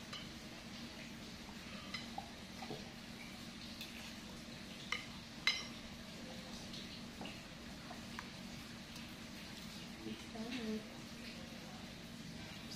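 Metal spoon and fork scraping and clinking against a glass serving bowl of noodles, in scattered light clicks. Two sharper clinks come about five seconds in.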